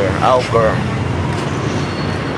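A voice speaks briefly at the start, then a steady low background hum carries on, without beats or changes.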